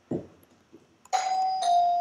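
A steady single-pitched tone starts suddenly about a second in and holds, dipping slightly in pitch partway through.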